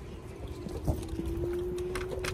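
Low rumble of wind and handling noise on a hand-held phone's microphone while riding a scooter, with a thin steady hum held throughout.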